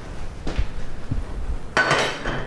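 Kitchen handling sounds as an omelet is slid from a skillet onto a plate: a few soft knocks, then near the end a sharp clink of cookware with a short ring.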